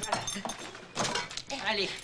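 Metal spoon clinking against a glass medicine bottle, with sharp clinks at the start and about a second in, as cough syrup is readied.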